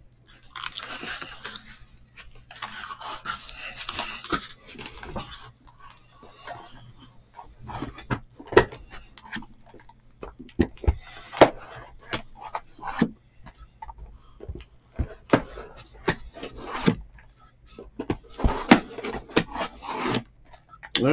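Shrink-wrapped cardboard hobby boxes of trading cards being handled and stacked on a table. The plastic wrap crinkles for the first few seconds, then a run of sharp knocks and taps follows as the boxes are set down and shifted.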